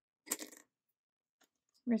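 Small wooden tokens clattering against each other in a wooden bowl as a hand rummages for one: a short burst of clicks about a quarter second in.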